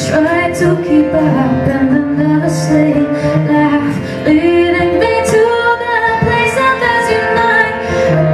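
Live acoustic duo: an acoustic guitar being played under a woman's singing voice, which holds long notes that bend in pitch.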